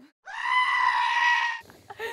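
A single shrill, steady scream at an even pitch, held for about a second and a half, starting and stopping cleanly. It has the sound of a comedic scream or bleat effect edited in as a reaction to the question.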